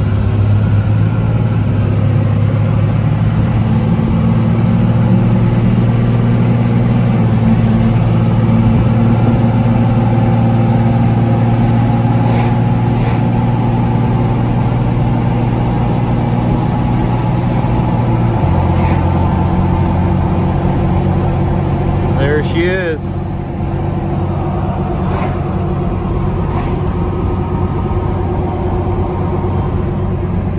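Second-generation Dodge Ram's turbocharged Cummins diesel pulling away from a stop under a heavy trailer load, heard from inside the cab. A turbo whistle rises over the first few seconds and holds high, then the engine note drops about eighteen seconds in and the whistle fades.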